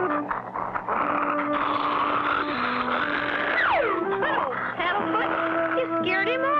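A cartoon dachshund's vocal sound effects: a raspy, noisy stretch of a few seconds, then quick whines that slide down and up in pitch. Underneath is background music of steady held notes.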